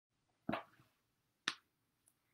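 Two sharp knocks about a second apart, the first with a short, duller tail. They are handling noise from a hand bumping the recording device while it is being set up.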